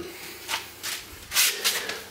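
A few short, soft rubbing and rustling noises with a faint hiss between them, the sort of handling sound a camera or hand makes moving against a machine.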